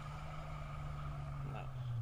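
Distant car engine held at high revs as it tries to climb a steep sand hill, its wheels spinning. It is a steady drone whose pitch dips slightly near the end. The onlookers fear the engine is being worked hard enough to blow it up.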